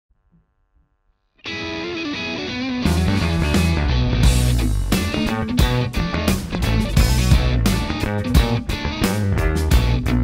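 Near silence for about a second and a half, then a band track starts and an electric bass guitar plays a line along with it. About three seconds in, drums join with a steady beat.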